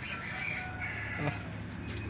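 A bird calling: a hoarse call that lasts about a second and a half and fades out partway through, over a low steady hum.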